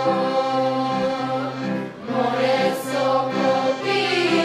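Children's choir singing together with a woman's voice leading, holding long sustained notes that move in steps; a brief pause for breath between phrases comes about halfway through.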